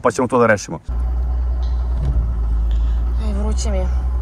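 The 3.0 diesel engine of an old Mercedes W126 running steadily, heard from inside the cabin as a loud, even low rumble that comes in suddenly about a second in.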